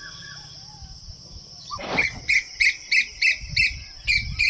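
A bird calling sharply and repeatedly, about three calls a second, starting about halfway through, over a steady high-pitched background drone.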